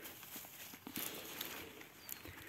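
Faint rustling of eggplant leaves and stems handled by hand, with a few small clicks and snaps, a little louder from about a second in.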